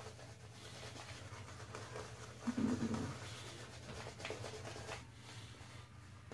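Vie-Long Lord Randal shaving brush being worked over a lathered, bearded face: a faint, soft scratchy swishing of bristles on skin.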